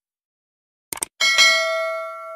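Sound effect of a subscribe-button animation: a quick mouse double-click about a second in, then a bright notification-bell chime that rings on and slowly fades.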